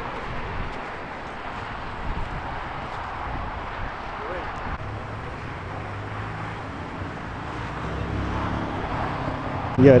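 Steady outdoor noise with faint distant voices and a car engine idling, the engine hum growing a little stronger near the end.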